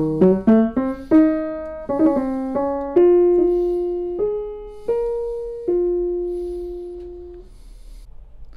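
Feurich 122 upright piano being played: a phrase of single struck notes in the tenor and middle register that climbs, then slows to a few longer notes, the last one held and left to ring until it fades near the end.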